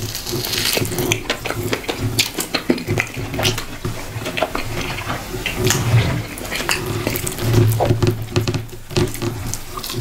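Wet chewing and lip smacking while eating fufu and egusi soup with goat meat by hand, with many sharp mouth clicks throughout. Sticky food squishes between the fingers.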